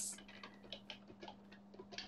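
Quiet pause holding faint scattered clicks and ticks over a steady low electrical hum.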